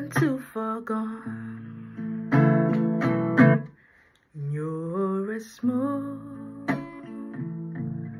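A woman singing over a strummed acoustic guitar. Both break off briefly a little before four seconds in, then the voice comes back with a rising line.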